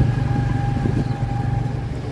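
Tuk-tuk engine running steadily, heard from the passenger cabin while riding through city traffic, with a faint steady whine above the low hum.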